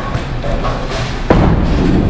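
Background music, with a bowling ball landing on the lane in a single thud about a second in, then rumbling as it rolls.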